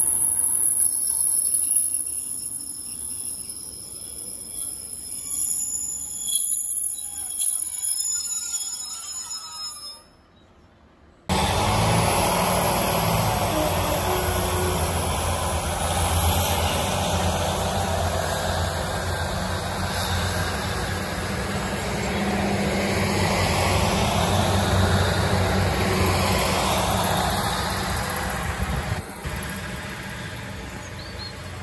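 A Northern diesel multiple unit runs past the platform with high-pitched wheel squeal that fades away. After a sudden cut, a steady loud rumble of diesel train engines and wheels on rail runs as a Class 156 unit comes in.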